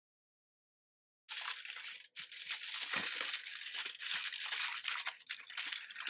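Aluminum foil crinkling and crackling as hands fold and press it around sweet potatoes, starting about a second in after dead silence, with a brief pause shortly after.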